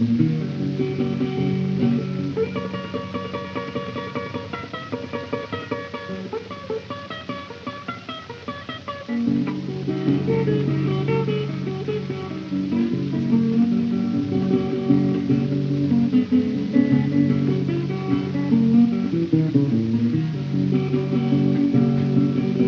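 Solo acoustic blues guitar playing without vocals. It thins out and drops quieter in the first half, then the bass notes come back strong about nine seconds in.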